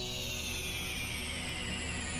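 Soft background music between narrated lines: a sustained ambient pad with a thin high tone that slowly falls in pitch.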